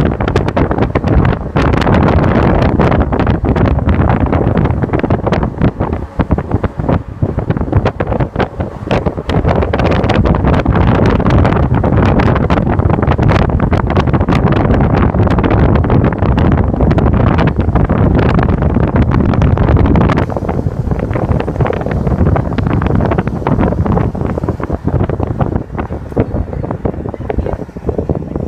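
Loud wind buffeting the microphone of a camera held out of a moving car, with road noise underneath and frequent gusty crackles. It eases slightly near the end.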